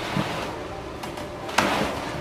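Treadmill running: a steady noise of the belt and motor, with a louder rush of noise near the end.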